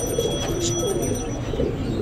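Caged domestic pigeons cooing, with low, soft, gliding coos.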